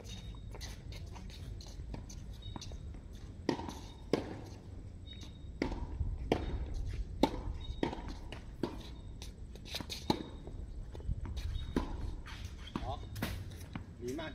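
Tennis rally: from a few seconds in, a run of sharp racquet strikes and ball bounces on a hard court, one every half second to a second, over a low steady background rumble.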